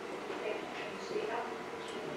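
A child's voice speaking faintly, far from the microphone, answering a question.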